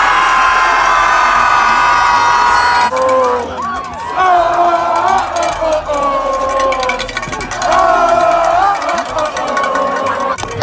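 A crowd of students cheering and yelling together. A massed, sustained shout cuts off about three seconds in, and voices then carry on in long drawn-out calls.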